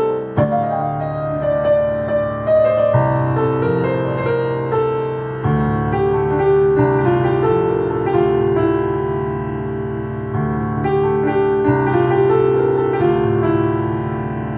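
Electronic keyboard playing a slow melody in a piano-like voice over held chords, the chords changing every few seconds.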